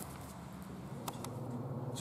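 Quiet room tone: a steady low hum with a few faint clicks about a second in.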